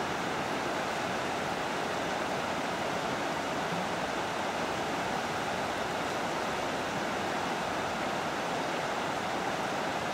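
Steady rushing of fast-flowing river water: an even, unbroken wash of sound.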